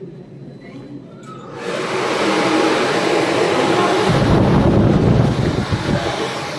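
Rubbing and rustling of clothing or a bag against a handheld phone's microphone as it is carried, a loud rushing noise that starts about a second and a half in, with a heavy low rumble in the last two seconds.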